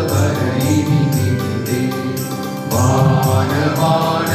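A group of men singing a Christian devotional song together over an accompaniment with a steady beat; the singing swells louder about two-thirds of the way through as a new line begins.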